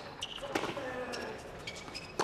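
Tennis rally on a hard court: a few sharp racket-on-ball hits and ball bounces, spaced roughly half a second to a second apart. Short high squeaks, likely shoes on the court, come with some of the hits.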